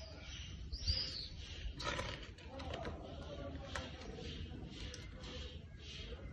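Faint outdoor background with a few soft, high bird chirps, one about a second in and a short evenly spaced run near the end, and light paper handling as a picture-book page is turned.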